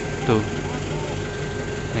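Steady low hum of a vehicle engine idling, with a short spoken word at the start and faint voices in the background.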